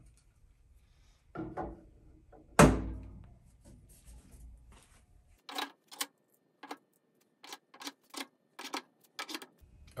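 Metal tools being set into a 3D-printed PLA tool rack on a lathe: a loud knock about two and a half seconds in, then a run of short, sharp clicks and taps as the pieces go into their slots.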